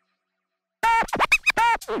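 Silence, then about a second in a burst of DJ turntable scratching: short chopped sounds that sweep up and down in pitch, used as a transition sound effect.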